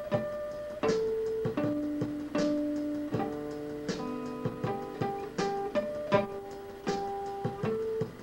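Acoustic guitar played fingerstyle without singing: single plucked notes and broken chords, each ringing on after it is picked.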